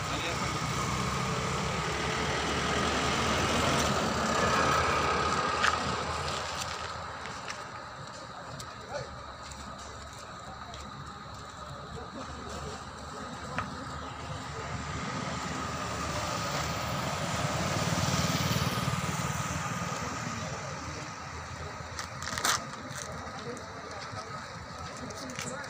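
Highway traffic passing, swelling and fading twice as vehicles go by, under indistinct voices, with a few sharp clicks.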